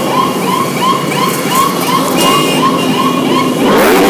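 A pack of motorcycles rides past with their engines running, under a repeating electronic siren-like chirp about three times a second. Near the end one bike revs loudly close by.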